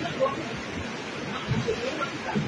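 Steady rushing-water noise from floodwater and rain, with voices talking briefly in the background.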